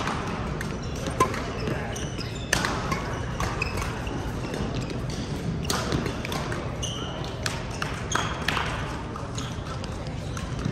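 Shuttlecocks being struck by badminton rackets in irregular sharp hits, with short high shoe squeaks on the court floor and a steady hubbub of voices echoing in a large sports hall with several games going on.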